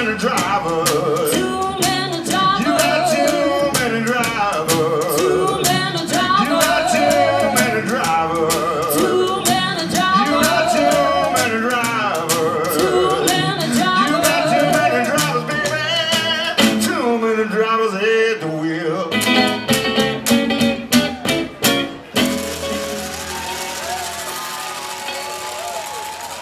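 Live acoustic blues: acoustic guitar and washboard strokes under a wavering sung vocal line. The song closes with a few final hits about twenty-two seconds in, followed by applause.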